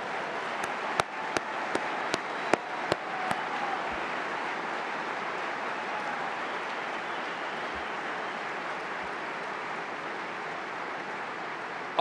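A large audience applauding steadily. A few sharp individual claps stand out in the first few seconds, then the clapping settles into an even wash.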